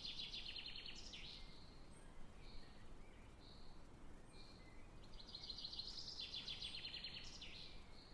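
Faint bird song over a low hiss: a high, rapidly pulsed trill at the start and another from about five seconds in, with short high chirps between them.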